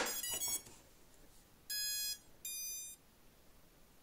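An 18650 cell clicks into the nano quad's battery holder, and the quad powers up: its ESCs play a quick run of rising startup tones through the brushless motors, followed about a second later by two separate beeps, the second higher-pitched.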